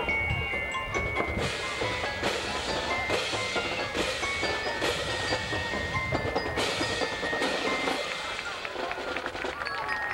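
Marching band playing, with ringing bell-like tones held over the music. From about a second and a half in, cymbal crashes fall roughly once a second for several seconds.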